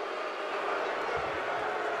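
Steady murmur of a stadium crowd, with a faint voice about a second in.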